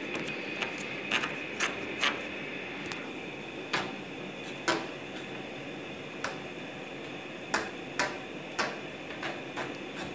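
Irregular light clicks and taps as a coaxial TV antenna cable is pushed by hand into a wall conduit at an electrical box, the cable knocking against the box and conduit, over a steady faint hiss.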